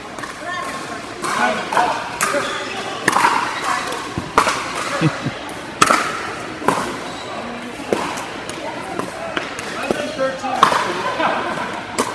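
Irregular sharp pops of pickleball paddles hitting hard plastic balls, echoing in a large indoor hall, with people talking in the background.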